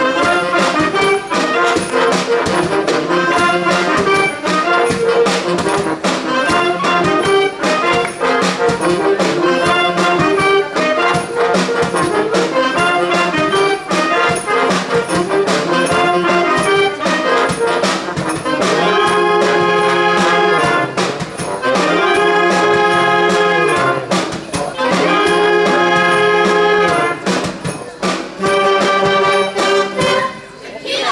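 A youth wind band of saxophones, trumpets and drums plays a tune over a steady drum beat. In the last ten seconds it holds long chords, each broken off by a short pause.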